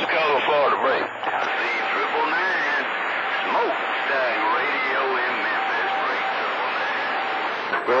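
CB radio receiving distant skip: faint, garbled voices through heavy static. A steady whistle tone sounds through the second half.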